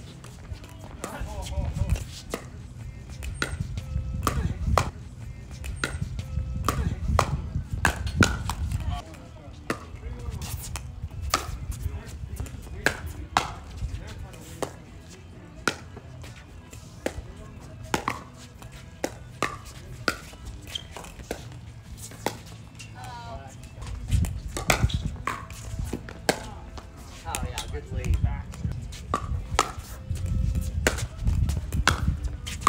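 Pickleball rallies: the hollow plastic ball popping off paddles in sharp, irregular hits, many over the stretch, with gaps between points.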